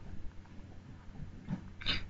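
Quiet room tone with a low steady hum. Near the end, a man's voice gives a short voiced sound as he starts to speak.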